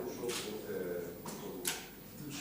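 Faint speech: a voice talking well away from the main microphone, asking a question in a press room.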